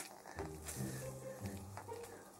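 A man's voice softly humming a few low notes that step up and down in pitch, starting about half a second in.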